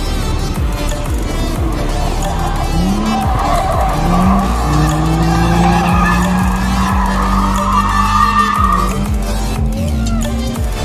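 A C5 Corvette's V8 held at high revs, with a couple of quick rises in pitch, as its tyres squeal through a long drift. The squeal builds in the middle and dies away near the end. Music plays underneath.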